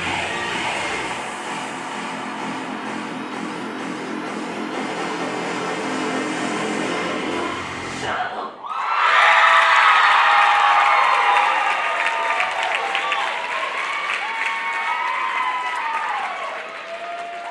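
Pop dance track playing over the hall's sound system, cutting off suddenly about eight seconds in as the routine ends. Then the audience breaks out in louder cheering, high-pitched screams and whoops, and applause.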